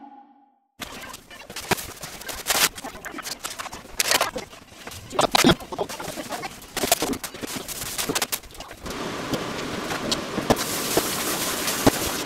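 Scattered sharp knocks and clicks over a background of room noise, which turns into a steadier hiss about nine seconds in.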